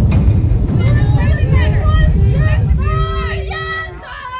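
Several high voices calling out and chanting over a loud low rumble, with one long held call near the end as the rumble dies away.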